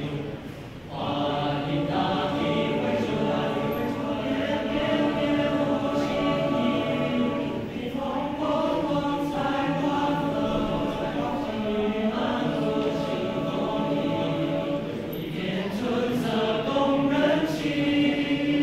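A boys' school choir singing a Chinese New Year song unaccompanied, with a short break for breath just after the start before the voices come back in.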